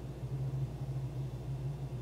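A steady low hum with faint background noise, unchanging throughout; no other sound.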